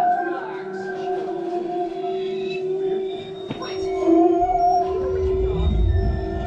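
Free-improvised experimental music: long held tones from trombone, bowed instruments and electronics, drifting and sliding in pitch against one another. A sharp click sounds about halfway through, and a deep low rumble builds in the second half.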